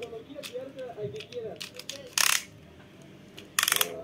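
Two short bursts of very rapid ratcheting clicks, about a second and a half apart, typical of a Beyblade ripcord launcher being worked.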